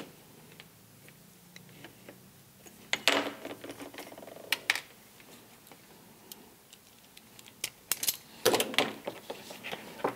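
Sharp clicks and snips of a hand cutting or stripping tool working a thin microphone cable, with handling rustle, in two clusters: about three seconds in and again near the end.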